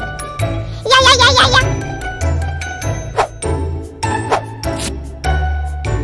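Cheerful background music with tinkling bell-like notes over a steady beat. About a second in, a short, wavering high-pitched sound rises above it.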